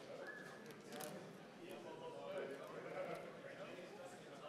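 Faint murmur of voices from a large seated audience in a big hall, with a light tap about a second in.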